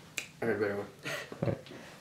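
A single sharp click, like a finger snap, just after the start, followed by a boy's soft voice for about a second, not clear enough to make out as words.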